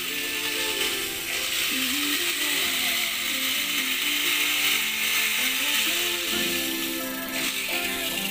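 Hand-held die grinder running with its bit grinding inside the port of a Yamaha RX two-stroke motorcycle cylinder, a steady high grinding that stops about seven seconds in. Background music plays underneath.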